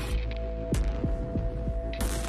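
Dark, suspenseful documentary underscore: a steady droning hum over a deep throbbing pulse, with short low swoops that drop in pitch and a sharp hit about three-quarters of a second in.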